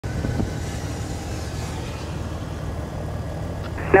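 Steady low rumble of a single-engine piston light aircraft running at idle, heard inside the cockpit, with a faint hiss over it in the first couple of seconds.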